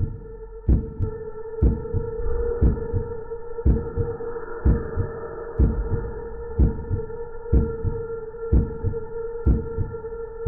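Slow, even heartbeat-like thumps about once a second over a steady hum: a dramatic heartbeat sound effect laid over slow-motion footage.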